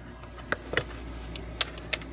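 Small metallic clicks and light rattling, about four sharp ticks, as fingers work the wire retaining pin out of the Ranger EV battery pack's cast-aluminium high-voltage plug, over a steady low hum.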